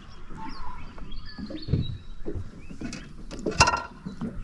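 Soft knocks and rustles as a small redfin perch on a lure is lifted aboard a boat and handled, with one sharp knock about three and a half seconds in. Faint bird chirps sound in the background.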